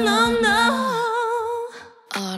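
A female singer holding a long final note with wide vibrato at the close of a live ballad, over a low sustained accompaniment note that drops out about a second in. The voice then fades away near the end.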